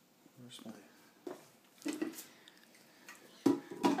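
Faint low voices, then two sharp plastic knocks near the end as a juicer's food pusher is set down into its feed chute. The juicer's motor is not yet running.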